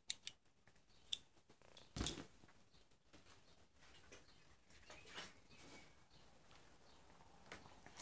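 Near silence with faint handling noise: a few soft clicks, then a dull knock about two seconds in and light rustling, as a stainless steel multi-tool is handled and laid down on a cloth.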